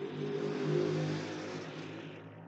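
A motor vehicle passing by. Its engine hum and road noise swell during the first second, then fade away slowly.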